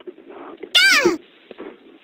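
A single cat meow near the middle, about half a second long, rising a little and then falling in pitch.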